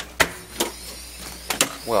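A sharp click a fifth of a second in, then a few lighter clicks and knocks: a car's latch being released and the panel let go.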